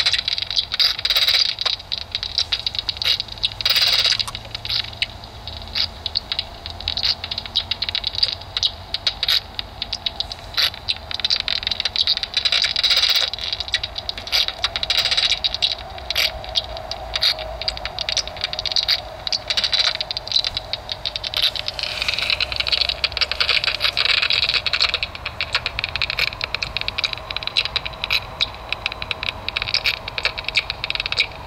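Heterodyne bat detector, tuned between 15 and 25 kHz, turning noctule bats' echolocation calls into irregular dry clicks over a steady hiss.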